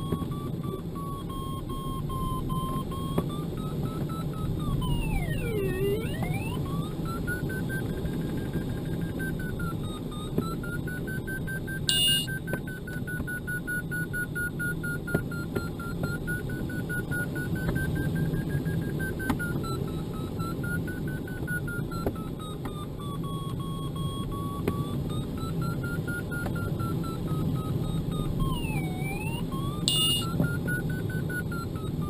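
A glider's audio variometer tone sounds continuously, its pitch drifting slowly up and down with the changing climb or sink rate and dropping steeply about five seconds in and again near the end. Steady airflow rush around the cockpit lies underneath, and a short electronic beep sounds about twelve seconds in.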